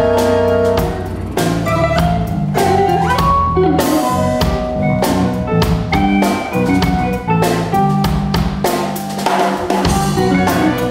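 Live band playing: a drum kit with frequent snare and cymbal hits drives electric guitar and violin over a moving low line.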